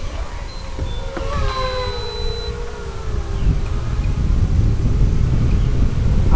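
Electric motors of an FPV racing quadcopter whining, the pitch falling slowly over a couple of seconds. Under it, a low rumble of wind on the microphone grows louder.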